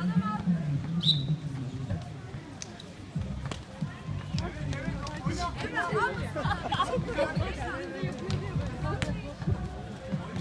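A basketball bouncing on a hard outdoor court during a youth game, a string of short knocks, under players' and spectators' voices.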